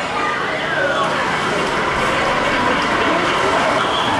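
Steady rushing din of a busy indoor exhibit hall, with indistinct voices of other visitors in the background.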